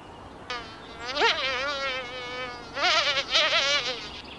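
A high-pitched cartoon voice wailing: one long wavering cry beginning about half a second in, then a run of shorter, broken cries near the end.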